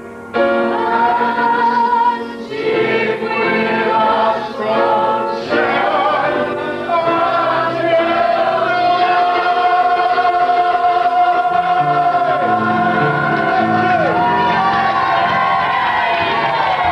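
A group of voices, men and women, singing a cheerful song together with piano accompaniment, rising to a long held note in the middle and carrying on near the end.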